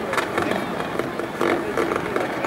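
Hawker Hunter turbojet fighter flying past, heard from the ground as a steady rushing jet noise.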